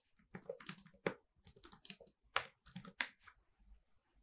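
Faint typing on a computer keyboard: an irregular run of short keystrokes, some quick and some spaced apart.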